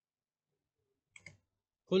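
Two quick clicks of computer keyboard keys, a fraction of a second apart, about a second in, as a two-digit number is typed; a man's voice starts just at the end.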